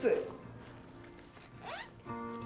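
A zipper on a bag being pulled open: one short, quick zip in the second half.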